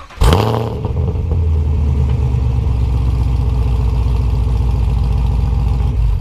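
The exhaust of a 2017 Camaro SS's 6.2-litre LT1 V8, fitted with ARH high-flow catalytic converters, comes in suddenly about a quarter second in. It then runs loud and steady at one even pitch, close to the tailpipes.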